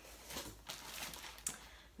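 Cardboard boxes being handled: faint scuffs and rustles, with a single light knock about one and a half seconds in.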